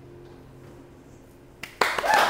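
The last keyboard chord of a song ringing on and slowly fading, then near the end a sharp clap followed by hand clapping.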